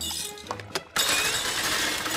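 Cartoon sound effect of metal nails clattering and crashing in, a few sharp clinks at first and then, about a second in, a loud harsh clatter, over background music.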